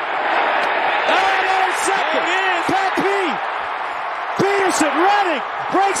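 A stadium crowd's steady roar under a television play-by-play commentator's raised, excited voice as a pass is intercepted and returned.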